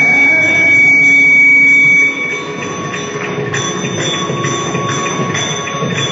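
Carnatic vocalist holding a final sung note over the accompaniment, which stops about two seconds in; the audience then applauds, a dense steady clapping, with a faint drone still sounding.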